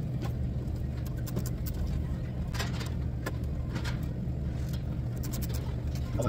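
Steady low machinery hum, with a few faint clicks and light handling sounds as wires are worked into the terminals of a panel-mount LED pilot light.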